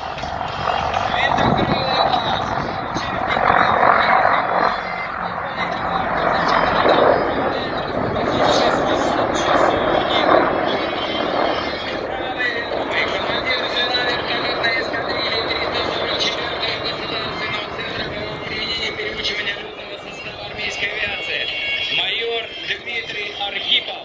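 Four military helicopters flying over in formation, their rotor and engine noise heard from the ground, mixed with indistinct voices.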